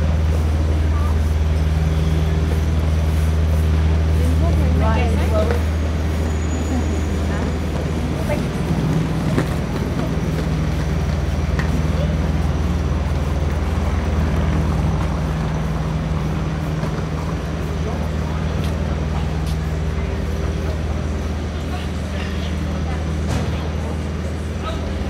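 City street ambience: the steady low drone of an idling vehicle engine, loudest in the first few seconds, with passers-by talking.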